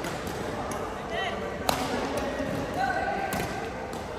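Badminton rally in a large, echoing sports hall: sharp racket strikes on the shuttlecock, the loudest about a second and a half in, with short shoe squeaks on the court floor and players' voices in the background.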